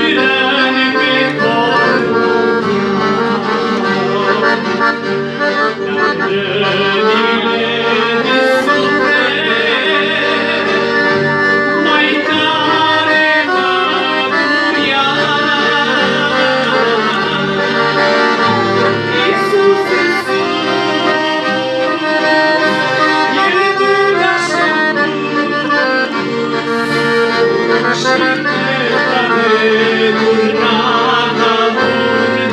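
Piano accordion playing a continuous tune at a steady loudness.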